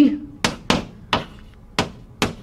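Chalk tapping and stroking on a chalkboard as symbols are written: four short, sharp taps at uneven intervals.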